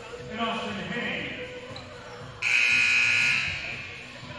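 Gym scoreboard horn sounding once, a loud steady buzz lasting about a second, as the timeout countdown nears its end, over people talking in the hall.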